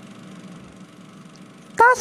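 A pause in the dialogue filled by a faint, steady electronic hum and hiss. Near the end a loud voice suddenly breaks in.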